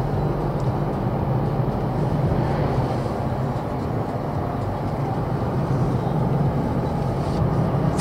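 Steady in-cab drone of a Mercedes-Benz X-Class X250d pickup driving at a constant speed: the 2.3-litre four-cylinder diesel running with an even low hum under road and tyre noise.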